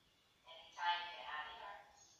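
A short pitched vocal sound, held for about a second, with many overtones.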